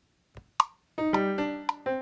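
Two short clicks, then about a second in GarageBand's Grand Piano virtual instrument starts playing the song's opening piano part, a new note or chord roughly every half second.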